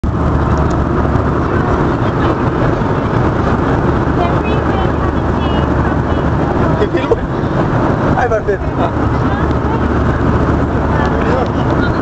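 Steady, loud roar of an airliner cabin in flight: engine and airflow noise, even and unbroken.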